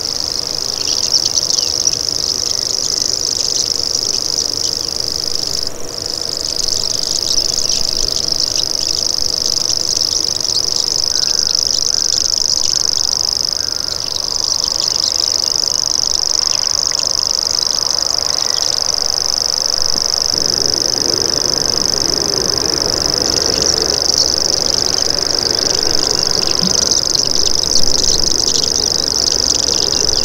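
Common grasshopper warbler (Locustella naevia) reeling: a continuous high-pitched, insect-like trill, broken only briefly about six seconds in.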